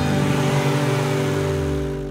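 Car engine sound effect running steadily with a hiss of rushing air, fading away near the end as the vehicle drives off.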